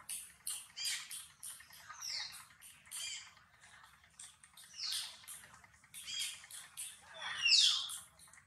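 Newborn macaque giving repeated short, high-pitched squeaks, several sliding down in pitch, the loudest near the end.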